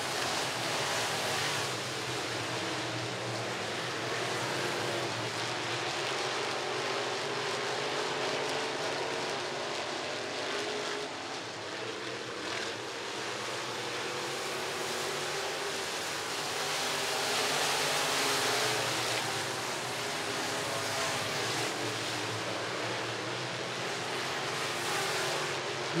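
A pack of IMCA Sport Mod dirt-track race cars at racing speed, their V8 engines blending into a steady drone that swells slightly and eases as the cars come round.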